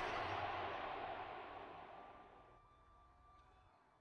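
The last of a live band's sound at an outdoor concert fading out steadily, from a wash of music to near silence by the end.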